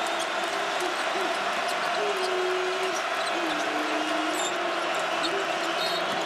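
Arena crowd noise during live basketball play, with a basketball being dribbled on the hardwood court and scattered short high squeaks.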